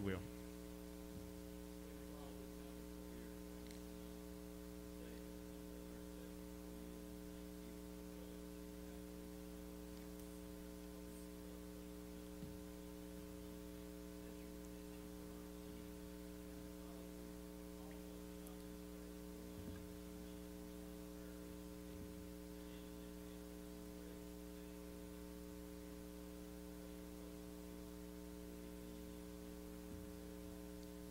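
Steady electrical mains hum in the audio feed: a low buzz made of several steady tones, with nothing else clearly heard over it.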